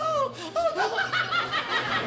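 Men laughing hard, a rapid string of short repeated laughs.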